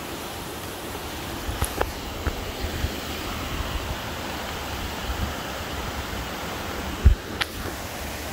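Steady rush of a rocky creek running over rapids, with scattered low thumps and a louder dull thump about seven seconds in.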